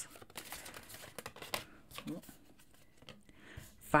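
Tarot cards being handled: soft slides and light clicks as cards are drawn from the deck and laid on a cloth mat, with a brief faint hum from a voice about two seconds in.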